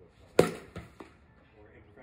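Bat striking a softball off a batting tee: one sharp crack about half a second in, followed by two fainter knocks.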